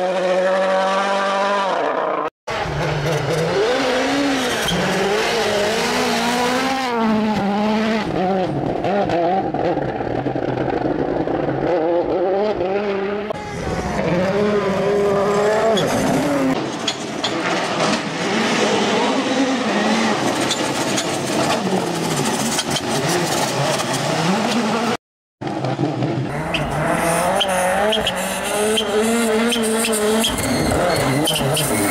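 Rally cars driven flat out on gravel stages, several passes one after another. The engines rev hard and drop repeatedly through gearshifts, spectators' voices are heard, and the sound cuts out briefly twice between clips.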